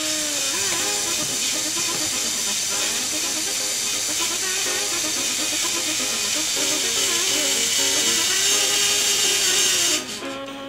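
LEGO Mindstorms electric motors and gear train whining steadily as the robot arm moves, starting and stopping abruptly.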